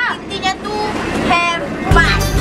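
Brief bits of people's voices talking over steady background noise; right at the end, music with heavy bass comes in.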